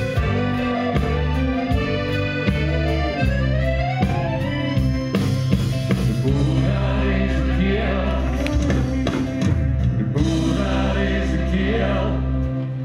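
Live concert music: an accordion playing over band and orchestra backing, with singing voices and a steady bass line. Part way through, the notes slide upward.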